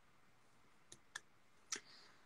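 Near silence broken by three faint, short clicks: two about a second in and one near the end.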